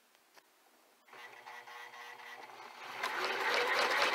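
Electric sewing machine running from about a second in and getting louder toward the end. It is set to straight stitch and sews a few stitches in place to tie off (lock) the thread of a button that was sewn on with zigzag.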